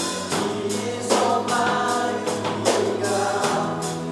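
Live worship band playing a song: a male lead voice singing over drums, electric bass, guitars and keyboard, with a steady beat of cymbal strikes.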